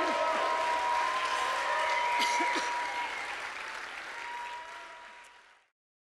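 Audience applauding and cheering at the end of a song, with a steady high tone held over it. The applause fades in the second half and cuts off abruptly near the end.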